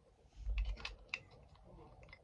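A low bump about half a second in, then a quick run of light clicks and taps as small boxed collectible figures are handled and set down.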